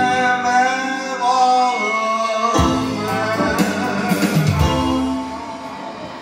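A man singing with a band of keyboard and plucked strings. The music drops in level near the end.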